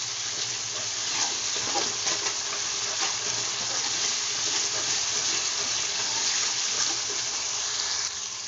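Masala of onion paste, ginger-garlic paste and ground spices sizzling steadily as it fries in oil in an aluminium kadhai, stirred with a steel spoon.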